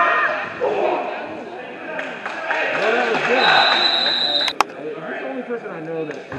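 Spectators' voices and shouts echoing in a gym during a basketball game, with a referee's whistle blown once for about a second a little past halfway that stops play, ending in a sharp smack.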